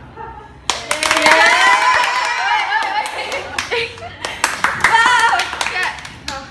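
A small group of teenage girls clapping and shouting excitedly, bursting in less than a second in after the birthday candles are blown out, with a second flurry of claps and voices near the end.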